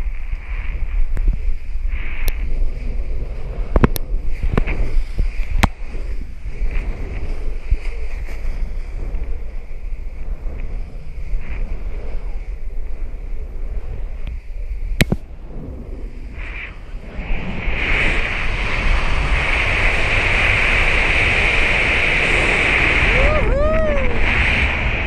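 Wind rushing and buffeting over a camera microphone in paramotor flight, with a few sharp clicks in the first half. The rush turns louder and steadier about three quarters of the way through, as the pilot banks steeply.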